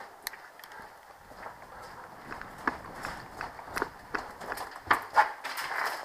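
Footsteps and rustling gear of a person walking, irregular soft steps with a couple of sharper knocks about five seconds in.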